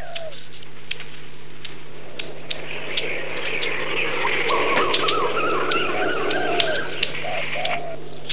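Birds calling outdoors, many short chirps and coo-like calls starting a few seconds in, over a steady low hum and scattered sharp clicks from the old soundtrack.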